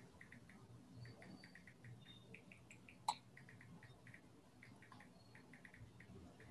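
Near silence with faint, short high-pitched chirps repeating in quick runs, and one sharp click about three seconds in.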